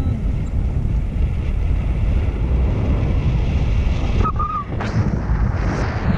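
Wind buffeting a handheld action camera's microphone during a paraglider flight: a steady, heavy low rumble of airflow.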